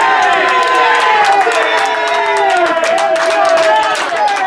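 A crowd of football supporters chanting together in long, drawn-out sung notes, with hand-clapping.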